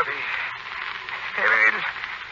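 Steady hiss in an old radio drama recording, with a brief voice sound about a second and a half in.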